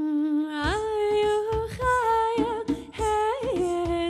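A woman's voice singing a wordless melody in held notes that slide up between pitches, with hand drum strokes beating a rhythm underneath from about half a second in.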